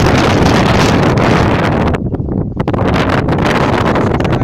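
Wind buffeting a handheld camera's microphone with a loud, steady rumble, easing briefly about two seconds in before picking up again.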